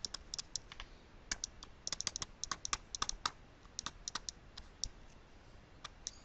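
Plastic stylus tapping and clicking on a pen tablet during handwriting: faint, irregular light clicks, often several in quick succession.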